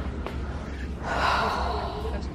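A woman's breathy gasp about a second in, lasting about a second.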